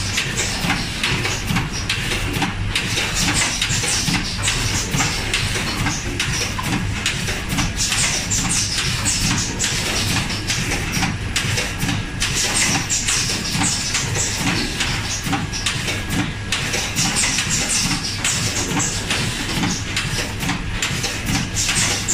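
Automatic rotary tube filling and sealing machine running: a steady mechanical clatter of many rapid clicks, with recurring patches of hiss.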